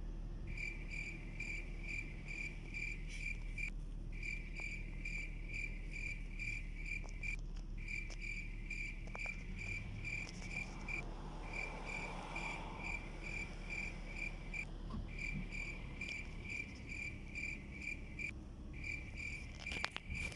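A vehicle's electronic warning chime beeping about three times a second, in runs of a few seconds with brief breaks, over the low steady hum of the engine inside the cabin.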